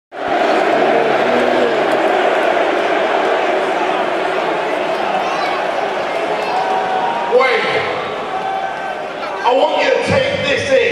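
Large arena crowd cheering and shouting, a loud dense roar of many voices in a big hall. The roar eases a little about seven seconds in, and a single man's voice over the public-address system starts to come through near the end.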